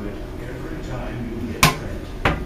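Spring-powered Buzz Bee Toys double-barrel toy shotgun firing a foam dart: one sharp snap about one and a half seconds in, over quiet room noise.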